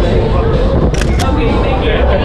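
Camera shutter clicking twice in quick succession about a second in, over loud chatter of a crowd.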